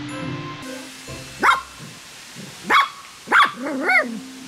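Toy poodle barking: three short, sharp barks spaced about a second apart, then a longer bark with a wavering pitch near the end.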